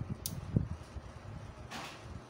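A 24 V 5000 W low-frequency inverter being switched on by hand: a sharp click a quarter second in, a low knock soon after, and a brief hissing rush near the end, over a low rumble.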